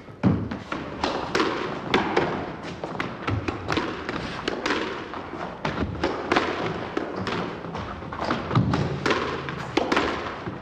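A squash ball being hit back and forth in a drill: rapid, irregular sharp knocks of the ball off rackets, the walls and the floor, about two a second.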